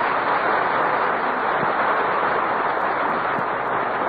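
Studio audience applauding steadily, welcoming a guest star's entrance.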